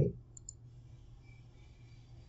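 A computer mouse button clicking twice in quick succession about half a second in, over faint room hiss.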